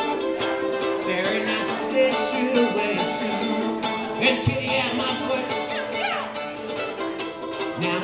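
Mandolin strummed in a steady rhythm, playing a live folk song's instrumental passage; a sung word comes in right at the end.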